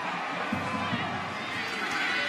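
Stadium crowd noise: a steady murmur of many voices in the stands.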